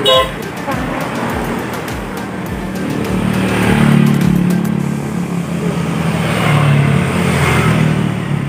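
Road traffic going by: the low engine rumble of passing vehicles, swelling about halfway through and again near the end, after a short pitched note at the very start.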